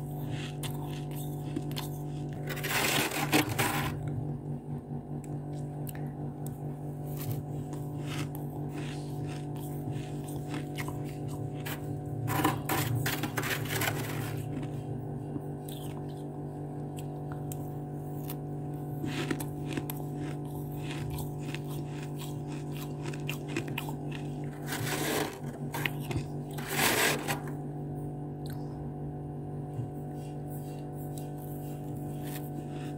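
A metal spoon scraping and scooping dry, squeaky freezer frost, making crunchy, crackling scrapes in several bursts (around 3, 13 and 25–27 seconds in) with fine crackles between them. A steady low hum runs underneath throughout.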